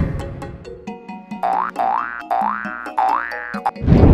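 Comedy sound effects over a music bed: a heavy low boom at the start, then three springy rising glides in quick succession, and another boom just before the end.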